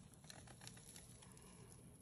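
Near silence with faint, scattered little crackles and ticks as a paper print is peeled slowly off a tacky gel printing plate.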